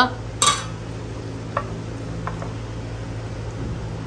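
A steel soup ladle clinks sharply against a stainless-steel pot as it is set back in, followed by a few lighter clicks of chopsticks against a ceramic rice bowl, over a steady low hum.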